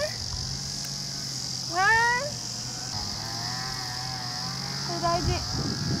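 A young woman's voice gives a short rising exclamation of surprise, 'eeh?', about two seconds in, reacting to a missed putt. A softer wavering vocal sound follows, then she starts speaking near the end. A steady high-pitched insect drone runs underneath.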